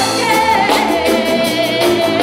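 Live band playing, with a singer's voice over electric guitar, bass, keyboards and drums.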